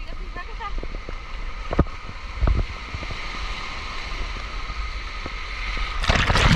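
Small waves breaking and washing up on a sandy beach, a steady surf hiss, with wind buffeting the microphone.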